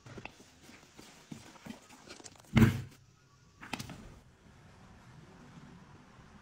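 Scattered soft knocks and rustles of handling, with one loud thump about two and a half seconds in and a short burst of knocks just under four seconds in.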